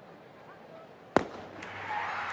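A single sharp bang about a second in, with a short ringing tail and a couple of faint clicks after it, over quiet room tone.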